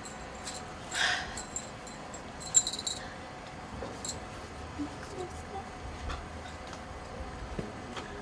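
Metal bangles clinking together on a wrist: a few light jingles with a short ringing, the loudest about two and a half seconds in, then only scattered faint ticks.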